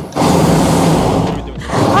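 Hot-air balloon's propane burner firing: a loud, steady rush of flame that fades out shortly before the end.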